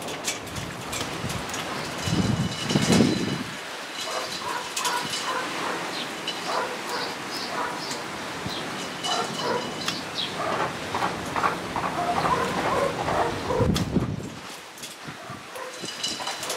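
Leaves and twigs of an elm bonsai rustling and crackling as its branches are handled and moved, with a low rumble about two seconds in and another near the end.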